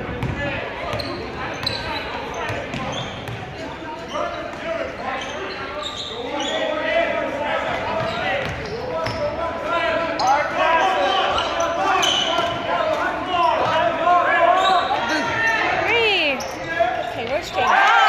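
Basketball bouncing on a hardwood gym floor amid many voices, players and spectators calling out and chattering, echoing in a large gymnasium. The voices grow louder over the second half.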